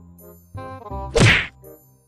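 Background music with a light melody, cut by one loud whack about a second in.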